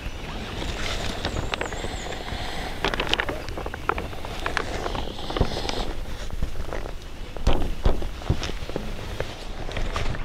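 Hands working a tarp corner and stake at the ground: scattered clicks, knocks and crinkles of the tarp, cord and stake, with footsteps on the forest floor near the end.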